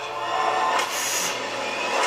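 Movie trailer soundtrack playing through speakers: a held chord of several steady tones, with a hissing whoosh about a second in.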